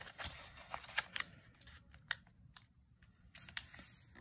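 Origami paper being folded and creased by hand on a tabletop: soft rustling with a handful of sharp paper clicks and taps spread through.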